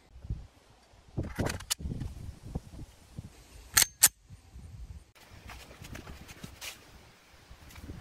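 A 9 mm semi-automatic pistol being handled: soft metallic clicks and rattles, then two sharp metallic clacks close together about four seconds in as the slide is racked back and let go.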